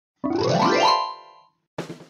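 Animation sound effect: a single rising pitch glide that holds briefly at the top and then fades out, all within about a second.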